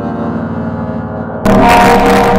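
Production-company logo music distorted by audio effects: a sustained droning chord with faint slowly rising tones above it. About one and a half seconds in it cuts abruptly to a much louder, harsher, distorted version.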